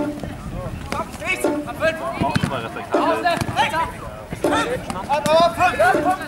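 Players shouting to each other during live play, over an even beat every second and a half: the Jugger timekeeper counting the 'stones'.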